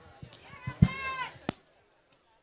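A loud thump, immediately followed by a brief voiced call from a person and then a sharp click, after which the sound cuts out abruptly.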